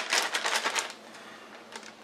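A plastic zip-top bag of freeze-dried elbow pasta being handled, giving a quick run of crinkling clicks for about the first second, then only a few faint ticks.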